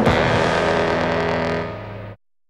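Cartoon theme music ending on one long held chord that slowly fades.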